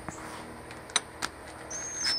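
A few faint clicks, then near the end the high whine of a cordless driver starting to spin a socket onto a cast-iron exhaust manifold bolt.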